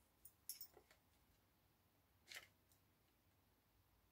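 Near silence, broken by a few faint, short crinkles and taps in the first second and one more about two seconds in, from handling an acetate strip and narrow double-sided tape.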